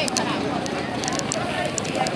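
Indistinct chatter of several people talking at once, over a steady background hum, with a few small clicks.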